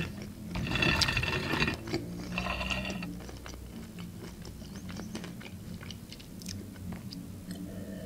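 Close-miked crunching of crisp pan-fried pelmeni being bitten and chewed: two crunchy stretches in the first three seconds, then quieter chewing with small mouth clicks.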